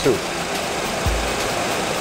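Steady rushing air and fan noise of a Boeing 737 flight-simulator cockpit, with a low rumble underneath and a soft low thump about a second in.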